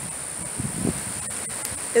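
Wind on the microphone with a brief low buffet about halfway through, over a steady high-pitched tone.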